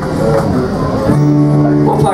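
Live country band's guitars playing, then settling on a chord held steady from about a second in.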